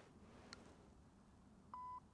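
Near silence, with a faint click about half a second in as a putter strikes a golf ball, then a short electronic beep, one steady tone, near the end.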